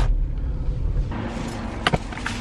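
Low rumble of a car driving, heard from inside the cabin, easing off after about a second, with one sharp click near the end.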